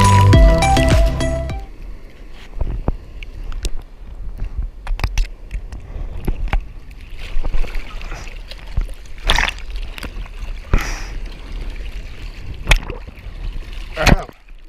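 Background music that cuts off about a second and a half in, then seawater sloshing and splashing around a camera held at the water's surface, with a low rumble and irregular short splashes, the loudest near the end.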